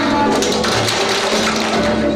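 Children's choir singing a holiday song over instrumental accompaniment with a steady bass and light percussion hits.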